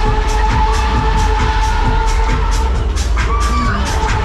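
Loud dance music from the fairground ride's sound system, with a fast steady beat and long held synth notes. Riders cheer and shout over it, with a short high call about three seconds in.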